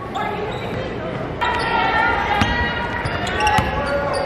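Game sounds on an indoor basketball court: a basketball bouncing on the hardwood floor with a few sharp knocks in the second half, over voices echoing in a large gym.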